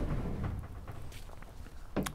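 Soft shuffling and handling noises from a person moving about while handling a heavy cable plug and the steel cabinet door. The noise is loudest in the first half second, then fades.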